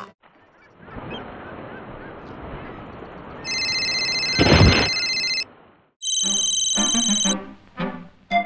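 A cartoon mobile phone ringing: two bursts of a steady electronic ring tone, the first with a brief loud low rumble in its middle, over a faint background hum.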